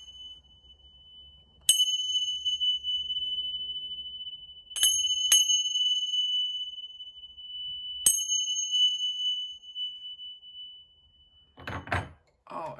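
A pair of brass tingsha cymbals struck together four times: once, then a quick double strike about three seconds later, then once more. Each strike leaves a long, high ringing tone that carries on between strikes and fades out near the end.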